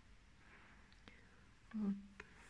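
Quiet room tone with faint breathing and a single light tick, then a short hesitant "uh" from a woman near the end.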